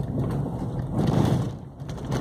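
A car's engine and road noise heard from inside the moving car as it drives slowly around a corner, a low rumble that swells about a second in and then eases.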